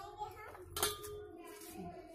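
A sharp click a little under a second in, and a smaller one near the end, over faint background voices.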